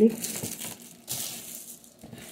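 Thin plastic packaging bag crinkling as it is handled, in two spells: one at the start and another about a second in.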